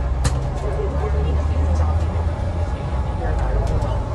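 Lower-deck cabin noise of an Alexander Dennis Enviro500EV battery-electric double-decker bus on the move: a steady low rumble, with a single sharp click about a quarter of a second in.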